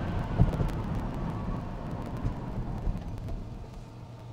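Road and wind noise inside a Tesla Model Y's cabin at highway speed: a steady low tyre rumble with one short thud about half a second in, growing quieter toward the end.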